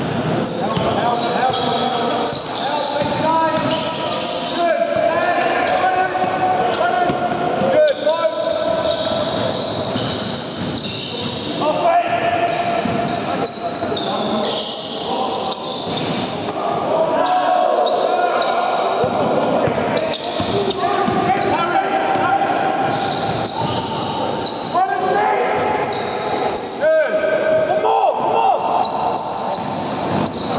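Basketball bounced on a wooden sports-hall floor during live play, with sneakers squeaking and players calling out, all echoing in the large hall.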